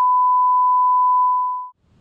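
Test-card tone played over colour bars: one steady, loud, pure beep at a single pitch that fades and cuts off shortly before the end.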